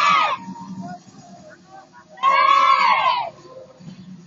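A group of high-pitched young voices shouting a cheer together: a brief shout right at the start and a longer one of about a second, about two seconds in, each rising and then falling in pitch.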